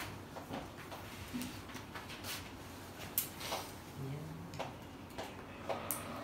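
Scattered light clicks and taps in a quiet classroom, with a brief low murmur of a voice about four seconds in. Just before the end comes a short scrape and tap of chalk on the chalkboard.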